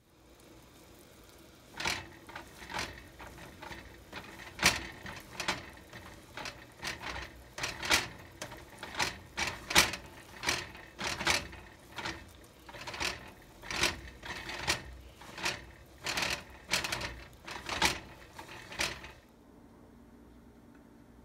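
A ball of frozen, hardened noodle dough being grated on a metal box grater, in a steady rhythm of rasping strokes a little more than one a second. The strokes start about two seconds in and stop about a second before the end.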